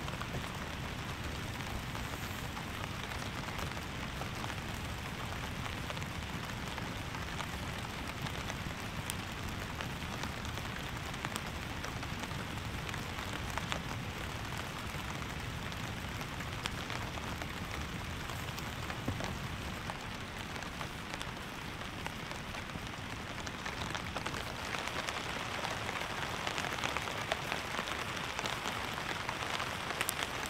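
Heavy rain falling steadily on a tarp: a continuous hiss with many fine drop ticks, growing a little louder near the end.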